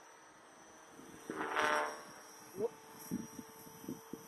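Faint, steady whine of a distant 450-size electric RC helicopter in flight. About a second in, a louder rushing sound swells up and fades over about a second.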